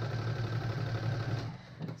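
Electric sewing machine running steadily, sewing a triple stretch stitch, then stopping about three-quarters of the way through.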